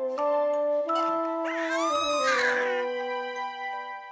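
Soft instrumental background music with slow, sustained notes. About a second and a half in, a cat meows once, a rising-then-falling call lasting just over a second.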